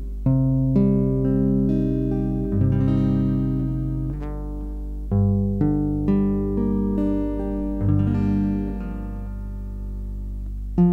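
Acoustic guitar with a capo at the third fret, fingerpicked through Am, Em and D chord shapes: individual plucked notes every half second or so, each left to ring into the next.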